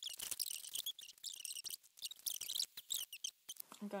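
A fast-forwarded stretch of talking: a voice sped up into rapid, squeaky, high-pitched chatter. It cuts off a little before the end, when normal-speed speech returns.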